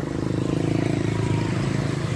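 Small motorcycle engine running steadily: a low drone with a fast, even pulse.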